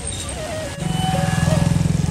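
A vehicle engine passes close by, coming in loud from about a second in with a low, fast pulsing, over background music with a wandering melody.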